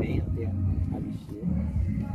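Indistinct voices with a steady low rumble underneath.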